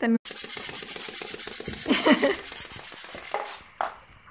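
Clockwork mechanism of a small yellow wind-up toy running on a wooden floor: a rapid, even whirring tick that fades out as the spring runs down, about three and a half seconds in. A child's short vocal sound comes about two seconds in.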